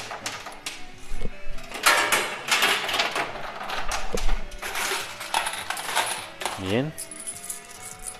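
Peso coins dropping into a coin pusher machine and clattering onto the metal playfield and the heap of coins, in several bursts of jingling impacts.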